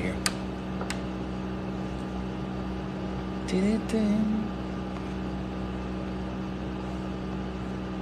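Steady low mechanical hum of an indoor appliance, with a single sharp click just after the start. About three and a half seconds in, a man gives a brief hummed murmur.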